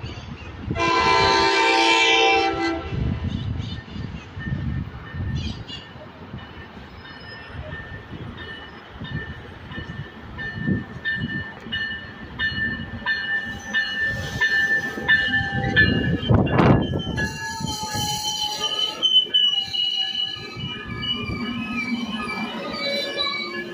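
NCTD COASTER commuter train arriving: a train horn gives one blast of about two seconds near the start, the loudest sound. The diesel locomotive then rumbles in and the bilevel cars roll past, with a high steady squeal as the train slows through the second half.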